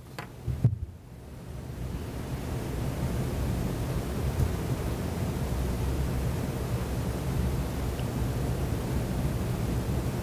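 Steady room noise during a silence: an even hiss over a low rumble that swells over the first two seconds and then holds level, with a short faint sound just under a second in.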